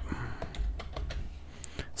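A few light, scattered computer keyboard keystrokes as a typed message is finished and sent.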